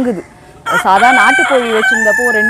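A Kadaknath rooster crowing: one long crow that starts about two-thirds of a second in and is still going at the end, loud over a woman's talk.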